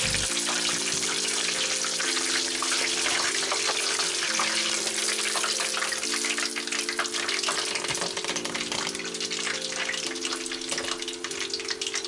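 Battered chicken pieces deep-frying in hot oil in a pot: a steady sizzle full of crackle, which grows more crackly about halfway through. Background music with held notes plays underneath.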